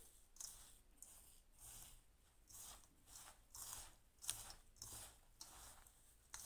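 A hand rubbing and mixing a crumbly, dry mixture of roasted wheat flour, sugar, chopped nuts and crushed edible gum in a stainless steel bowl. It makes faint, soft gritty rustles about twice a second.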